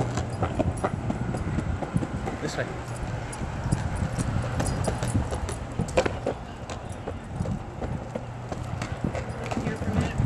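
Irregular clicks and taps of walking on pavement, footsteps and a dog's paws, over a steady low hum, with faint voices in the background.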